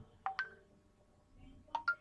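Short electronic beeps: two a quarter to half a second in, then three in quick succession near the end, each a sharp onset with a brief pitched tone.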